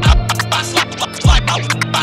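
Instrumental boom bap hip-hop beat with turntable scratching over deep kick drums and a steady bass line.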